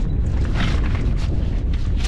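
Wind buffeting the microphone, a steady low rumble, with a few faint clicks and rustles of gear being handled in a jet ski's storage compartment.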